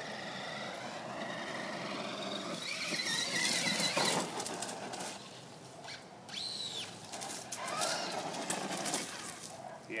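Brushless electric motor of a Traxxas Stampede VXL RC monster truck whining, its pitch rising and falling with the throttle as the truck speeds up and slows. It is loudest around three to four seconds in, with a sharp rising whine a little after six seconds.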